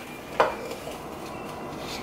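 Scooping powdered baby formula from the can into a plastic formula dispenser: a single light tap about half a second in, then faint handling noise.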